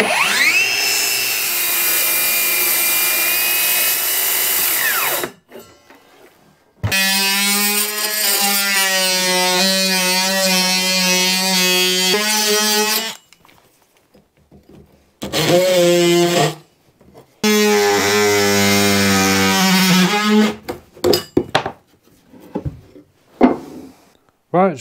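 Cordless power saws cutting marine plywood: a circular saw spins up with a rising whine and runs through a cut for about five seconds, then a cordless jigsaw buzzes steadily through three shorter cuts at the panel's notched corners. A few knocks and clatters near the end as offcuts come free and the board is moved.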